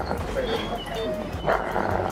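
German Shepherd breathing noisily and laboriously, each breath taking extra effort: the breathing muscles are weakening under tick paralysis toxin.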